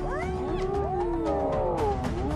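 Several spotted hyenas calling over one another: overlapping rising and falling calls, with a longer wavering call through the second half.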